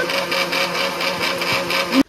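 A small electric motor running steadily with a fast, even pulse, cutting off abruptly at the end.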